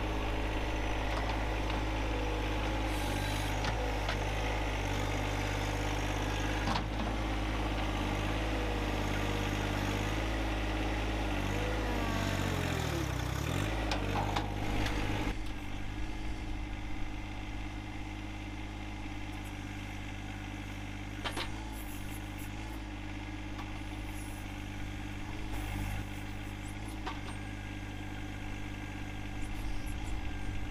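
John Deere 1025R compact tractor's three-cylinder diesel engine running steadily; a bit under halfway its pitch sags and then recovers. Just after, the sound drops abruptly to a quieter engine note, with a few sharp knocks.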